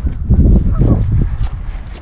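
Wind buffeting the action camera's microphone: a loud, uneven low rumble.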